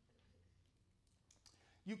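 Near silence: room tone, with a few faint clicks in the second half and a man's voice starting just before the end.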